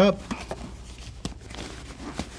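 Soft nylon rustling of a Peak Design camera bag being handled as bungee cords are tucked into one of its pockets, with a couple of light clicks a little after a second in.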